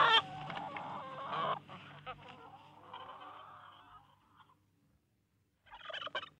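Chicken-like clucking on the record, loud for a moment, then fading and dying away about four and a half seconds in; a short burst of the same kind returns near the end.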